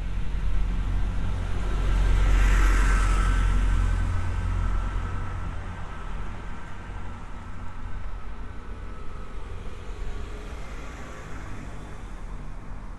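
A car driving past on a narrow street, its engine and tyre noise swelling to a peak about two to four seconds in and then slowly fading.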